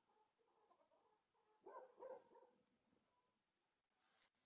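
Near silence, broken by a faint dog barking twice in quick succession about two seconds in.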